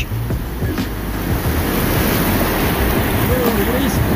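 Surf breaking and washing up a sandy beach: a steady rushing that swells slightly through the middle.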